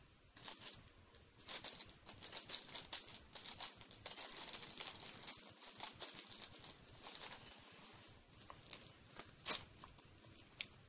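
Crinkling and rustling of packaging being handled, a run of irregular small crackles with one sharper crackle near the end.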